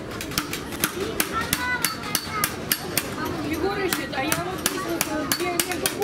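Hammers tapping metal on small anvil stakes set in wooden stumps: quick, irregular strikes, several a second, some with a brief metallic ring.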